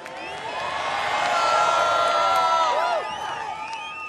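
A large crowd cheering and whooping, many voices at once, swelling over the first second and dying away near the end.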